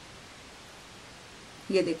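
Steady low hiss of background noise, then a woman's voice saying one short word near the end.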